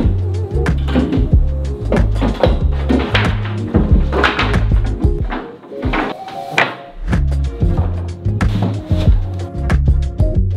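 Background music: a drum-break beat over a deep, repeating bass line. The bass drops out for about a second and a half around the middle, then the beat comes back in.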